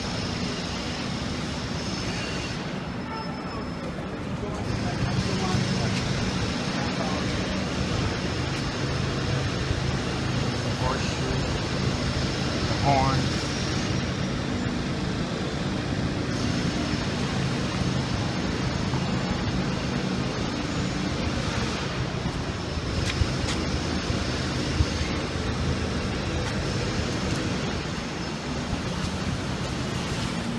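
City street traffic noise with a steady low engine hum that gets louder about four seconds in, and faint voices of people nearby.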